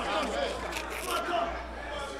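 Faint, indistinct chatter of several people in a large room, with no one speaking into the microphone.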